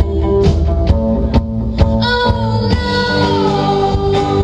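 Live rock band playing with electric guitars and drums, the drums hitting steadily through the first half. About halfway a long held note enters over the band and slides down in pitch.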